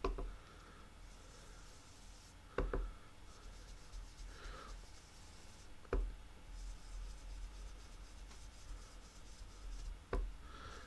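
A blending brush dabbed onto an ink pad and brushed over embossed cardstock: a few soft knocks (one at the start, a quick double about two and a half seconds in, another about six seconds in) with faint brushing and rubbing between them.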